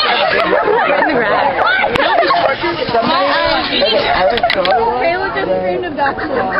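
Several young voices chattering and talking over one another, loud and continuous.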